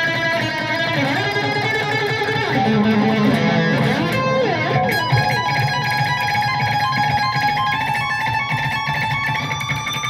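Electric guitar playing a lead solo at full speed, fast-picked on the high string: a quick run of changing notes in the first half, then a held, rapidly picked note that rises in pitch near the end.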